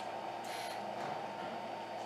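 Steady low room hiss, with a faint brief stroke of a dry-erase marker writing on a whiteboard about half a second in.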